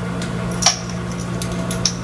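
Light handling sounds of spices going into a cast iron pot: one sharp click with a brief ring about a third of the way in, and a few softer ticks near the end, over a steady low hum.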